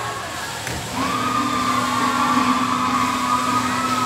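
Amusement ride's motor giving a steady whine that starts about a second in and holds.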